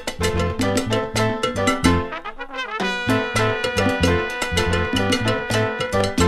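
Instrumental salsa music: a horn section of trumpets and trombones plays over bass and Latin percussion. The horns hold long notes in the second half.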